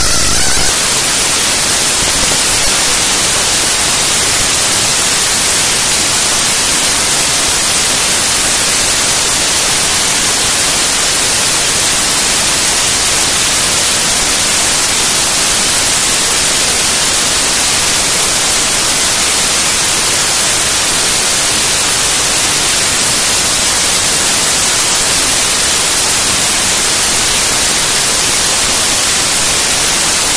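Loud, steady static-like noise from a glitch track made of raw data played as audio, brightest in the highs, unbroken apart from a few faint tones in the first half second.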